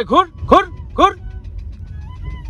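Low, steady rumble of a car cabin while driving slowly, with four short rising-and-falling vocal calls about half a second apart in the first second.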